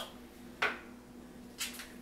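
Kitchen handling on a wooden cutting board: two light knocks about a second apart, as a knife and cut lime halves are set down and picked up.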